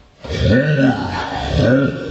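A man's voice grunting and groaning in several short "uh" sounds, each rising and falling in pitch.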